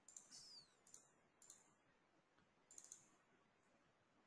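Near silence with several faint computer mouse clicks, scattered singly and in small groups.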